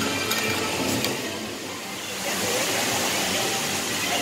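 Outdoor theme-park ambience: faint background music over a steady rushing hiss, which grows fuller about two seconds in.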